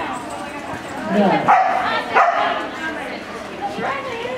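A dog barking and yipping a few times, the loudest calls coming short and sharp around the middle, over people talking in the background.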